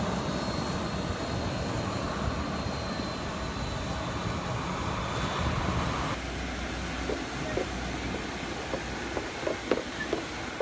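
Steady noise of jet aircraft and ground equipment on an airport apron, with a high steady whine joining about halfway. From about seven seconds in, short clanking steps on metal airstairs.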